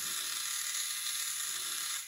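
Small geared DC hobby motor driving a plastic wheel, running steadily at constant speed.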